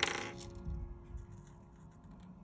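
Short rattle of light, hard plastic clicks from a dual-tip art marker and its cap being handled, dying away within about half a second, followed by faint ticks of the marker tip on paper.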